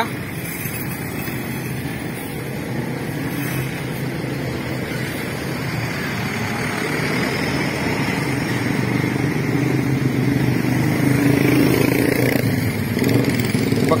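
A Primajasa intercity bus's diesel engine running as the bus drives past at close range, mixed with motorcycle engines in the same traffic. The sound builds steadily and is loudest about eleven seconds in.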